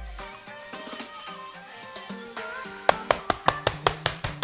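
Background music with a plucked melody; about three seconds in, the flat side of a meat mallet starts pounding a pork tenderloin through plastic wrap on a cutting board, a quick run of thuds about five a second.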